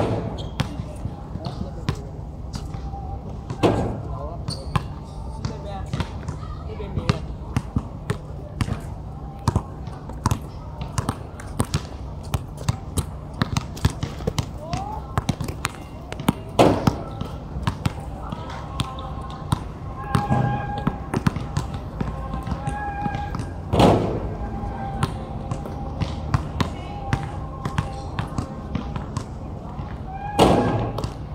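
Basketballs bouncing on an outdoor hard court: a frequent patter of dribbles and bounces, with a few louder thuds as shots hit the rim, over a steady low rumble.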